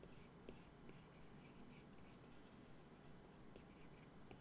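Faint stylus tip tapping and sliding on an iPad Pro's glass screen while drawing: a scatter of light ticks and scratches over near silence.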